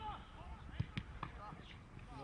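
Three sharp thuds of a football being struck about a second in, against distant shouts of players on the pitch.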